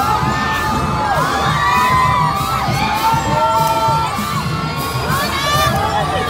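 A dense crowd cheering and screaming without pause, many high-pitched voices overlapping.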